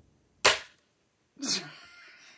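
A person laughing in short bursts: a sharp puff of breath about half a second in, then a brief chuckle about a second later whose voice falls in pitch.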